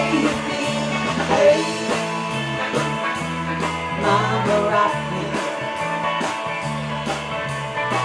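Live country-rock band playing an instrumental passage between sung lines: acoustic and electric guitars over electric bass and a drum kit keeping a steady beat.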